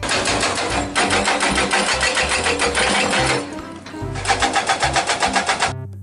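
Hydraulic rock breaker on an excavator arm hammering rock: a rapid, steady train of blows. It weakens briefly a little past the middle, resumes, and cuts off just before the end.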